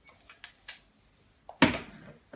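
Small clicks and knocks from a chrome Hoover vacuum cleaner being handled, with a few faint clicks and then one louder knock about one and a half seconds in.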